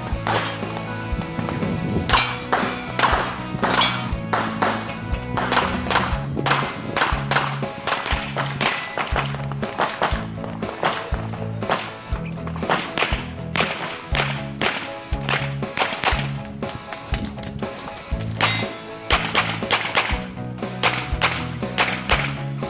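Background music with a repeating bass line and many sharp percussive hits.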